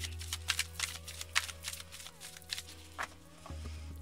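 A tarot deck being shuffled by hand: a quick, irregular run of soft card clicks and flicks. Soft background music and a low steady hum sit underneath.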